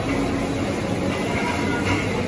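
Steady rumble and clatter of processing machinery running on a meat-packing floor, such as conveyors and packing machines.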